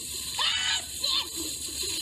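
A woman's short startled cries and gasps as ice-cold water is dumped over her.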